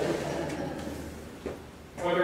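A brief pause in a man's speech: the last of his voice dies away in a reverberant hall, leaving quiet room tone with one faint click about one and a half seconds in.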